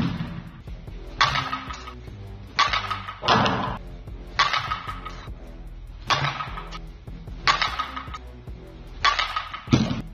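About six sharp bat-on-ball hits, roughly a second and a half apart, from a two-piece composite slowpitch softball bat with a carbon-fibre barrel (Worth SAVIJ XL), each a crack with a brief ring. Background music plays under them.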